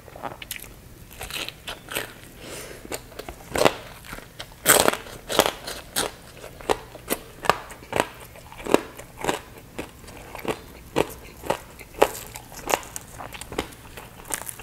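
Crispy pork belly skin bitten and chewed close to the microphone: a steady run of sharp crunches, about two a second, the loudest about five seconds in.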